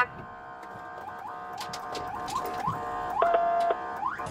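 Police car siren sounding steadily, with short rising chirps every few tenths of a second and a fast upward sweep at the very end.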